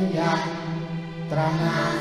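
A man sings a Thai patriotic song about the national flag into a microphone, holding long notes, with an orchestra and children's choir accompanying him.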